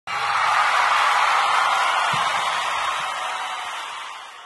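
A loud rush of noise that starts suddenly and slowly fades away over about four seconds, with no tune or voice in it: the sound effect under the channel's intro card.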